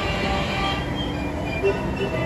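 Dark-ride soundtrack music with scattered short notes, heard over a steady dense rumble of ride noise.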